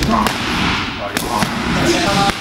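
Boxing-glove punches smacking into a hand-held strike shield, a few sharp impacts, as a knife attack is blocked and countered.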